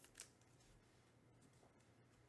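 Near silence with faint trading-card handling: one short, light click about a quarter second in, then a couple of very faint ticks.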